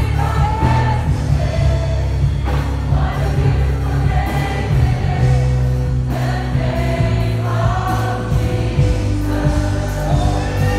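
Worship music: many voices singing together over a band with a strong, steady bass.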